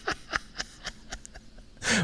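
A lull in a studio conversation filled with a few soft mouth clicks and breathy puffs, then a sharp intake of breath near the end as a speaker draws breath to laugh and talk.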